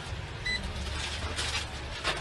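Low, steady street rumble of traffic, with a single short high beep about half a second in.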